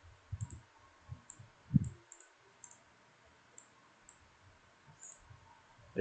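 Computer mouse clicking: a dozen or so light, scattered clicks, with a few soft low thumps in the first two seconds.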